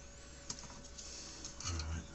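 Light clicks and rattles of a printed circuit board and its attached wires being handled and turned over inside a metal equipment case, with a short low vocal hum near the end.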